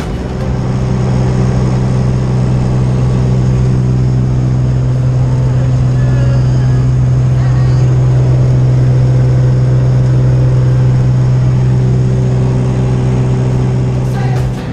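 Light aircraft's piston engine and propeller droning at a steady pitch, heard from inside the cabin during the climb, with air rushing past. It grows a little louder about a second in and then holds steady.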